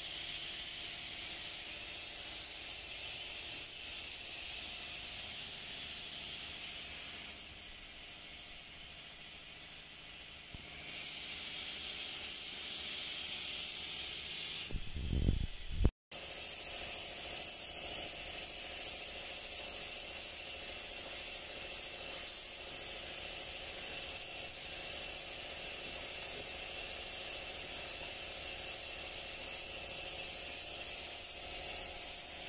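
Compressed-air paint spray gun hissing steadily as it lays coats of paint on a car fender. About halfway through there is a short low thump, then a momentary dropout, after which the hiss carries on.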